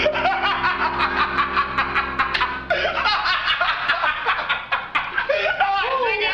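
A man laughing hard in rapid, repeated bursts, with a short catch of breath about halfway through.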